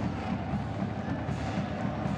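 Drums playing over the steady noise of a large stadium crowd.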